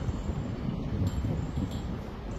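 Steady low rumbling background noise in a pause with no speech, with faint ticks about a second in and near the end.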